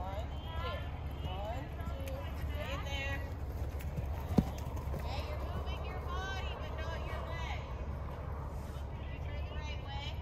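Horse cantering on sand arena footing, its hoofbeats over a steady low rumble, with one sharp click about four seconds in.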